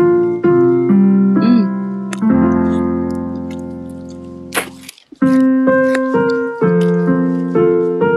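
Background piano music: slow notes and chords, one long chord fading out about two-thirds of the way through before the playing picks up again.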